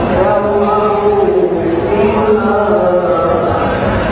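Male Quran reciter chanting a melodic tilawah in the qira'at sab'ah style, with long, ornamented held notes.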